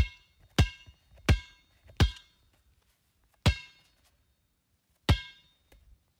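A string of six sharp, metallic-sounding clanging hits, each ringing out briefly with a bell-like tone. The first four come about two-thirds of a second apart, then two more follow at longer gaps, with quiet in between.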